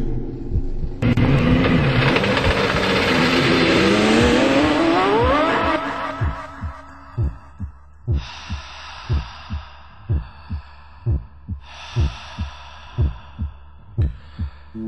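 A sound-designed heartbeat of regular low thumps, about two a second. Over it, a loud roar of a high-revving car engine climbs steadily in pitch for a few seconds, followed later by two shorter hissing swells.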